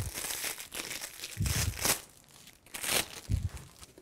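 Thin plastic wrapping crinkling in irregular bursts as a jersey hanger in its clear plastic sleeve is handled, with a couple of soft thumps, about a second and a half in and near the end.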